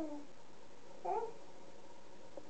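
A toddler's short, high-pitched vocal sound, a single rising call about a second in.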